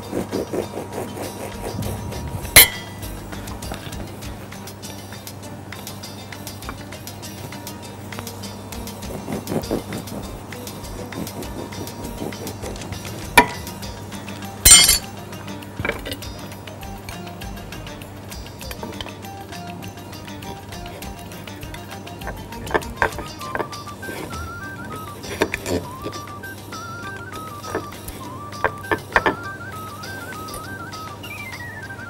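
Background music with a few sharp clinks and knocks of glass bakeware and bowls being handled on a kitchen counter; the loudest comes about halfway through.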